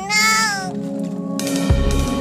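A cat meow, a short bending cry that ends under a second in, laid over background music with held notes; a low drum hit comes near the end.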